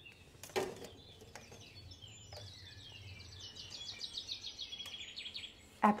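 A small bird singing a rapid trill of high chirps, about six or seven a second, lasting roughly three seconds from about two seconds in. A single knock sounds about half a second in.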